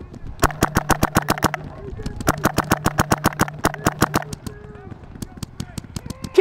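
Paintball marker firing in two rapid strings of shots, about ten a second, each with a steady low hum under it. Sparser, fainter shots follow near the end.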